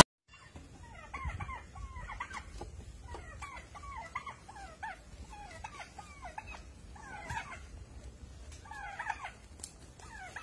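An animal's short, high calls, repeated in runs of two to four quick notes that slide down and up in pitch, over a faint low rumble.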